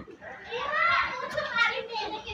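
A child's voice talking.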